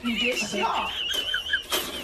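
French bulldog whining: one long, high-pitched, wavering whine of nearly two seconds, with a few short higher yelps under it.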